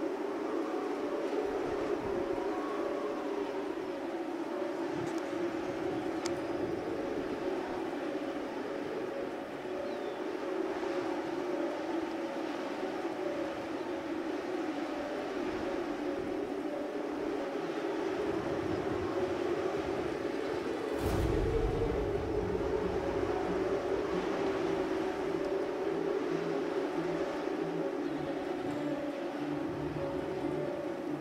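A steady engine-like drone runs throughout, joined by a deeper rumble about two-thirds of the way in.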